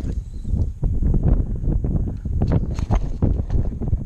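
Handling noise from a small action camera being moved and gripped: a run of irregular low bumps and rubbing against the microphone.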